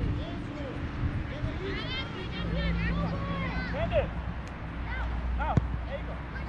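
Young players' high-pitched shouts and calls across a soccer field, clustered about two to four seconds in, over a low steady rumble, with a single sharp thump about five and a half seconds in.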